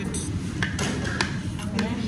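Metal spoons clinking and scraping against plates as rice is dished out, a few sharp clinks over a low background hum and murmur of voices.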